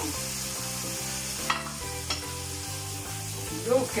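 Anchovies sizzling steadily in a stainless steel pan while a vinegar and white wine sauce reduces around them, with a sharp click about one and a half seconds in. Faint background music underneath.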